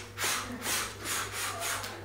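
A man breathing forcefully in quick rhythmic strokes, about three a second, growing a little softer toward the end: a priming breath exercise.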